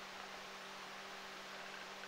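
Faint steady electrical hum, one low tone with a weaker higher one, under an even hiss: the background noise of the recording.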